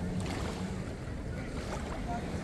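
Wind buffeting the microphone over small waves lapping at a pebble shore: a steady low rumble and hiss, with a faint low hum that fades out about a second in.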